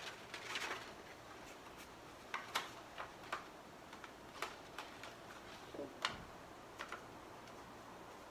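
Paper and a glue stick being handled at a tabletop while cut-out shapes are glued onto a paper card: faint, irregular small clicks and brief paper rustles.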